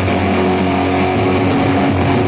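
Loud rock music led by distorted electric guitar, with held notes sustaining throughout.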